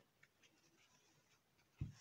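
Faint scratching and rustling of a needle and red yarn being drawn through crocheted fabric, with a soft low thump near the end.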